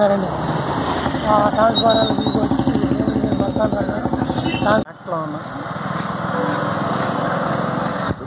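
A small motorcycle engine runs close by with a steady rapid pulse, under a man's voice. It cuts off suddenly about five seconds in, and a steady engine and traffic hum follows.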